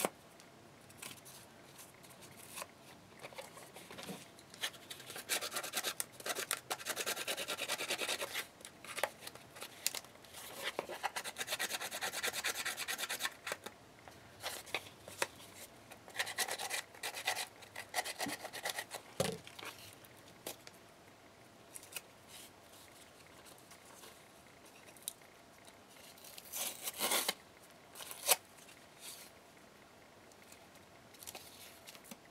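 Cardboard being torn and its edges picked and ripped apart by hand, a dry rasping and crackling that comes in several long stretches, with a few scissor snips.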